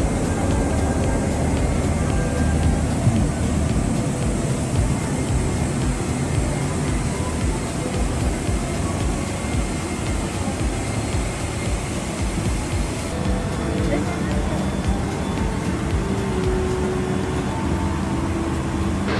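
Steady hum of an airliner cabin's ventilation while the aircraft is being boarded, under murmured voices and faint music.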